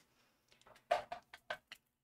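A cluster of light clicks and taps about a second in, the first the loudest: handling noise from a clear plastic ruler being picked up and set against the sticker sheet.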